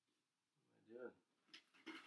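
Mostly near silence, broken about a second in by a short wordless vocal sound from a man. Near the end come a few sharp clicks as a cardboard box is cut open with a single scissor blade.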